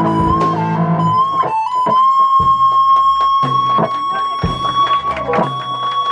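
Live metal band playing: an electric lead guitar holds one long note, bent up slightly about a second in, over drum hits and low rhythm guitar and bass that stop and start.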